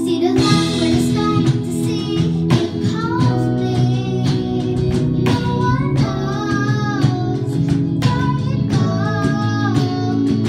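A young girl singing a song into a microphone over live band accompaniment led by an electronic keyboard, holding long notes about six and nine seconds in.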